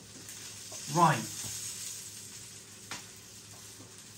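Cheese-filled Käsekrainer sausage sizzling steadily on an electric grill plate, with a single light click about three seconds in.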